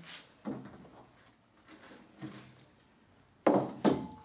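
Handling noises as dry argile clay is scooped from a plastic bucket: a few faint scrapes and knocks, then two sharp, louder scrapes about half a second apart near the end.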